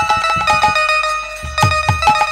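Instrumental passage of devotional kirtan music: a bright plucked-string melody of quick ringing notes over low hand-drum strokes. The drum pauses for about a second in the middle, then comes back in.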